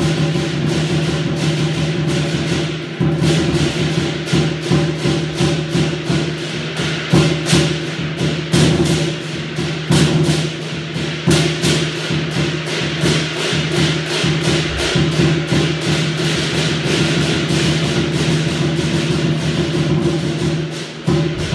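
Chinese lion dance percussion: a drum, crash cymbals and a gong played together in a fast, continuous beat.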